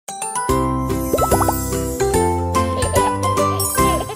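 Children's channel intro jingle: a short pitched melody with a few quick rising swoops about a second in.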